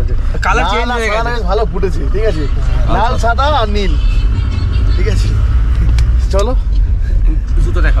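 Steady low rumble of engine and road noise inside a Tata Sumo's cabin as it drives, with voices talking over it in the first half.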